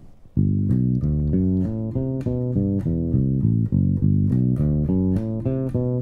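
Electric bass played fingerstyle: a steady run of single notes, about four or five a second, starting about half a second in. It is an arpeggio exercise that plays the odd- and then the even-numbered degrees of a major scale, up and back down.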